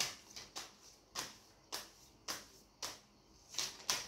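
A deck of tarot cards being shuffled by hand, with a soft swish of cards sliding against each other about twice a second.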